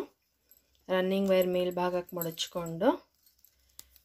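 Speech only: a woman talking for about two seconds in the middle, with quiet pauses before and after.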